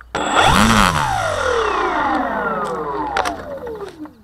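An RC plane's electric motor and propeller, a Hangar 9 Sundowner 36, throttled up sharply from a standstill and then spinning down. Its whine drops steadily in pitch for almost four seconds.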